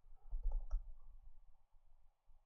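A few soft clicks on a computer, the two sharpest about half a second in and shortly after, over a faint low rumble.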